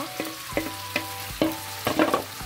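Sliced onion and diced courgette sizzling in a frying pan as a wooden spoon stirs them, with a few short knocks of the spoon against the pan.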